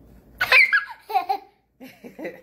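A young child laughing in a run of short bursts starting about half a second in, with a few softer ones near the end.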